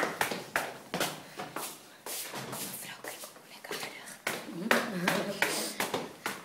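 Phone handled close to its microphone: a run of knocks, taps and rubbing, with brief voices about five seconds in.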